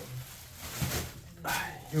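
Bubble wrap and plastic packaging rustling as it is handled, with two short wordless vocal sounds from a man, one about a second in and a breathier one near the end.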